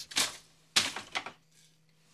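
Wooden hand loom clacking as the beater is pulled forward to pack the weft into the cloth: about three sharp knocks in the first second and a half.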